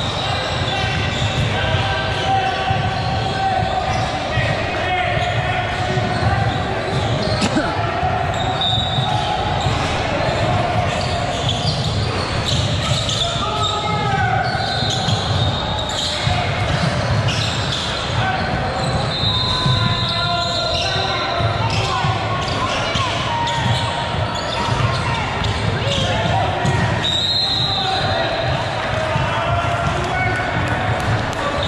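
Basketball game in a large gymnasium: a ball bouncing on the hardwood floor, with players' and spectators' voices echoing throughout.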